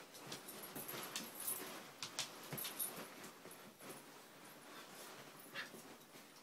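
Siberian husky puppies play fighting, with a run of short scuffles and small dog noises, busiest in the first half.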